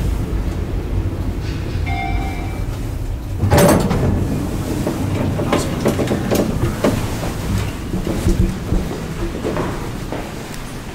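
Schindler traction elevator car riding with a steady low rumble. About two seconds in comes a brief electronic tone, and at about three and a half seconds a loud clatter as the car doors open, followed by scattered clicks and knocks from the doors and footsteps.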